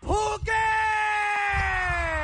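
An announcer's voice calling out the winner's name as one long, drawn-out shout that falls slowly in pitch. A low rumble joins underneath about one and a half seconds in.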